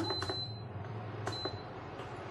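Induction cooktop's touch-control panel beeping as its buttons are pressed: a long high beep at the start, then a short one just over a second in, with a couple of faint clicks over a low steady hum.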